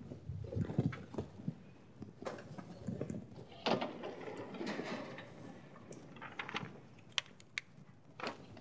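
Chalk on a blackboard: irregular scratching and tapping strokes, with a couple of sharp taps near the end.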